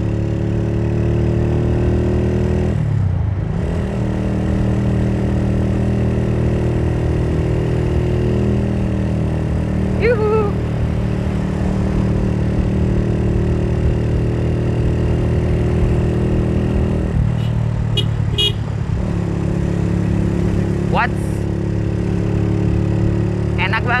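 Suzuki Thunder 125's single-cylinder four-stroke engine running under throttle on the move, its note breaking and dropping briefly about three seconds in and changing again around seventeen seconds.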